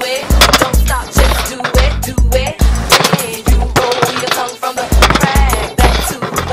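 Music with a heavy bass beat, mixed with skateboard sounds: wheels rolling on concrete and the board clacking and hitting against ledges.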